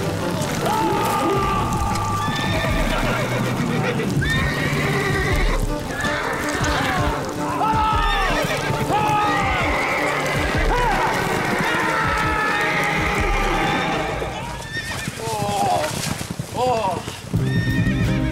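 Horse whinnying repeatedly with hoofbeats while a man yells and screams, over dramatic orchestral music.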